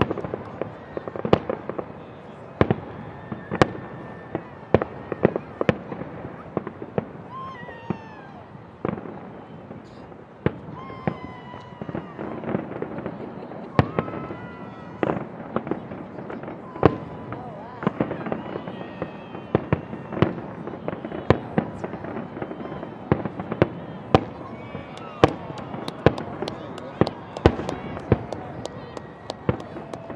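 Fireworks display: aerial shells bursting in a string of sharp bangs over a steady rumble, the bangs coming faster and closer together near the end.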